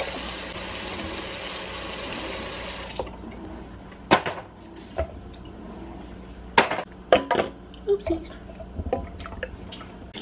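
Kitchen tap running into the sink, shut off abruptly about three seconds in, followed by a scatter of sharp clicks and knocks as plastic baby bottles are handled with silicone-tipped kitchen tongs.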